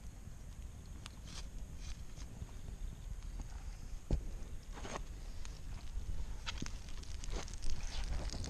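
Wood campfire crackling, with irregular sharp pops about once a second over a low steady rumble.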